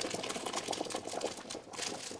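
Boiled rotini and its cooking water poured into a perforated stainless-steel colander: water splashing and pasta pattering against the metal in a rapid, uneven clatter, louder briefly near the end.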